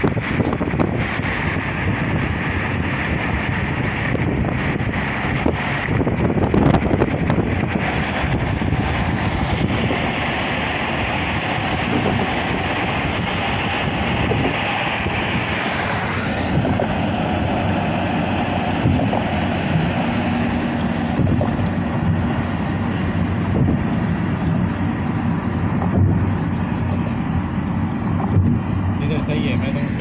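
Steady road and wind noise of a car driving at highway speed, heard from inside the car, with a faint steady hum joining about two-thirds of the way through.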